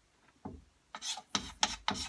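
Chalk writing on a small wall-mounted chalkboard: a couple of light taps, then from about a second in a quick run of short, scratchy chalk strokes.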